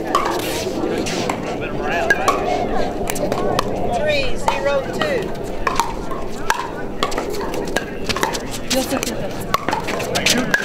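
Pickleball paddles striking the hard plastic ball: scattered sharp pops throughout, over a murmur of voices.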